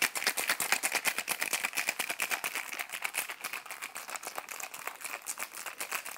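Ice rattling inside a stainless steel cocktail shaker shaken vigorously by hand: a rapid, even clatter of ice against metal.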